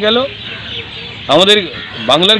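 A man speaking in short phrases, with a pause of about a second between them filled by steady outdoor background noise.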